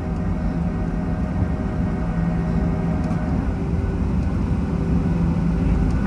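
Jet airliner cabin noise while taxiing: the engines at idle thrust heard from inside the cabin, a steady hum with a constant low drone over a rumble.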